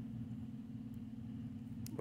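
Low steady electrical hum of room tone, with one faint click near the end.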